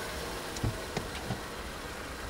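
A car door being unlatched and swung open: a few short clicks and knocks over a steady low rumble, like an engine idling.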